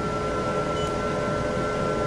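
Steady hum of a running diode laser hair removal machine's water-cooling system, a constant noise with a few fixed steady tones.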